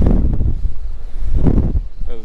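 Wind buffeting the microphone in a steady low rumble on an open boat at sea, with two louder rushes: one at the start and one about a second and a half in.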